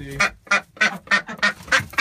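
Juvenile ducks quacking repeatedly, short calls about three a second.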